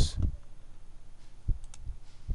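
A few faint computer mouse clicks near the end, just after a short, soft low thump.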